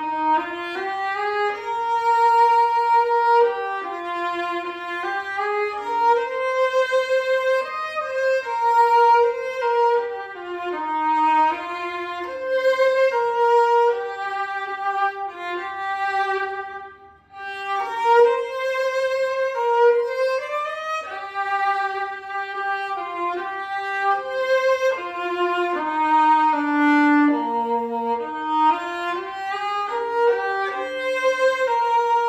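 A solo violin, bowed, playing a melody of connected notes, with a short break between phrases about halfway through.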